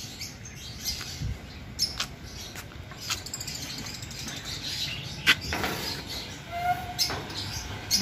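Outdoor background with scattered short bird chirps and a few sharp clicks or knocks, the loudest just before the end.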